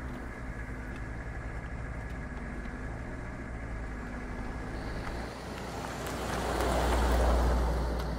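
Van engine running, a steady low rumble heard from inside the cabin. About five seconds in, a whoosh swells up, is loudest near the end, then begins to fade, as the vehicle passes close by.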